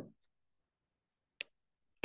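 Near silence with a single short, sharp click about one and a half seconds in.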